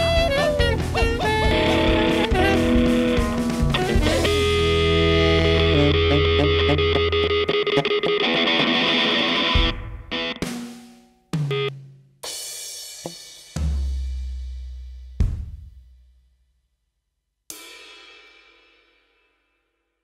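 Rockabilly band playing an instrumental passage on electric guitar, bass and drums with cymbals, then ending the song in about six separate stop hits, each left to ring out and fade, with silent gaps between.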